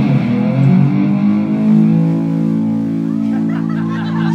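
Live rock band with electric bass and keyboard playing the song's closing chord, held and ringing steadily through the second half.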